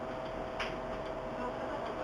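Steady hum with a held tone from a DT3-E subway train standing at a station platform, with a single click about half a second in.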